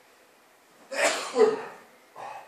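A person sneezing once, loudly, about a second in.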